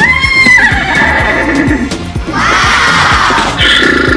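A recorded horse whinny sounds twice, once at the start and again, longer, about two seconds in, over background music with a steady beat.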